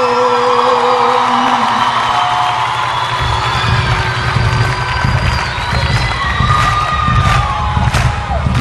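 Live concert music in an instrumental passage between sung lines, with a crowd cheering. Long held notes carry the first few seconds, and a low beat comes in about three seconds in.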